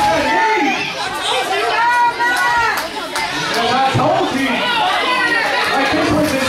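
Wrestling crowd voices shouting and chattering over one another, with a few drawn-out calls standing out, echoing in a large hall.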